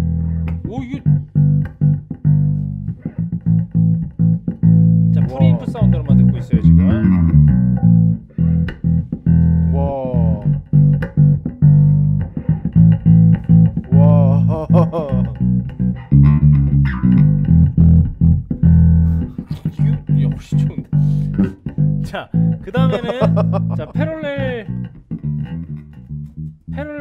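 Electric bass guitar played through a DSM & Humboldt Simplifier Bass Station preamp and cabinet simulator, heard through a bass amp's power section and cabinet: a loud, continuous run of plucked bass lines with a deep low end.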